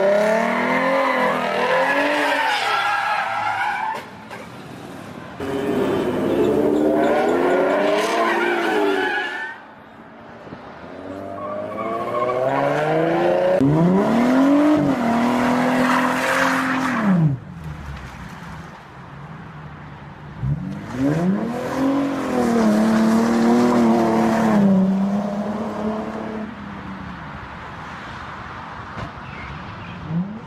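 Ford Mustang engines revving hard in about four surges, each rising and falling in pitch, with tyres squealing and skidding through burnouts and slides.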